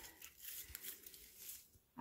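Faint rustling and crinkling of flowers, leaves and stems being handled and pushed into floral foam. The sound cuts to silence just before the end.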